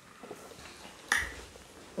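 Quiet eating sounds from fufu and okra soup eaten by hand, with one short, sharp wet smack a little past halfway.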